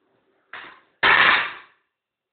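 Small prop cannon firing: a faint short burst, then about half a second later a sudden, much louder blast that dies away within a second, leaving a puff of smoke.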